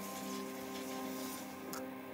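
Soundtrack music holding a sustained chord of steady notes, with a faint click near the end.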